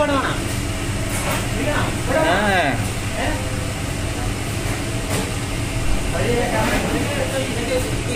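Indistinct voices in the background over a steady low hum.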